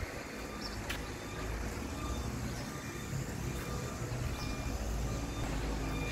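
Outdoor background with a steady low rumble of distant road traffic, and a faint click about a second in.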